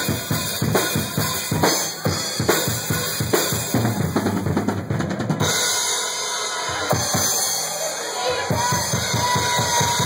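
Live rock drum solo on a full kit: fast runs of snare and tom hits over the bass drum, with a denser flurry about halfway through.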